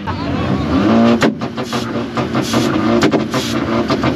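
A tuned car engine revving hard, its pitch climbing through the first second and ending in a sharp exhaust bang, with more sharp pops about three seconds in.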